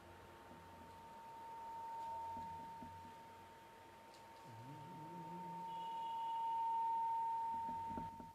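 A single steady high-pitched tone that swells louder twice, about two seconds in and again near the end, with quieter stretches between.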